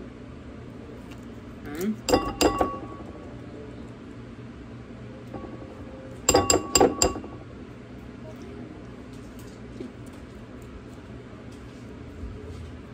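Metal measuring spoon clinking against the rim of a ceramic mixing bowl in two quick bursts of a few taps each, about two seconds in and again about six seconds in, knocking scoops of whipped cream cheese off the spoon.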